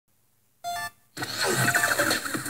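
Opening of a short intro jingle: a single brief tone about two thirds of a second in, then from just over a second a busy burst of music with gliding tones.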